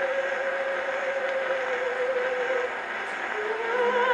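Acoustic playback of an Edison Diamond Disc of an operatic soprano on a console Edison phonograph, with steady surface hiss and no deep bass. A long held sung note fades out about two and a half seconds in, and the accompaniment and voice come back in near the end.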